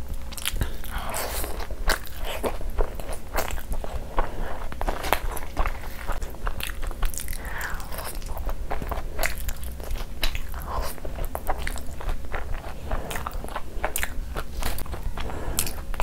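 Close-miked mukbang chewing and biting of saucy butter chicken and fries, with many short wet clicks and mouth smacks throughout, and fingers working through the saucy food.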